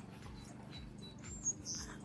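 Faint, high bird chirps, with a short whistled note about a second and a half in.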